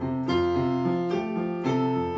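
Electronic keyboard played in a piano voice: chords over low bass notes, with fresh notes struck about every half second and left to ring.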